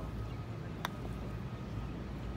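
A putter striking a golf ball once: a single short, sharp click a little under a second in, over a steady low outdoor rumble.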